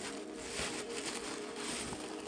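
Tissue paper crinkling and rustling as it is unwrapped by hand.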